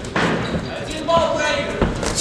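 Thuds of kickboxing blows landing, with gloved punches and kicks hitting, two sharp impacts standing out just after the start and near the end. A loud shout from ringside rises over them in the middle.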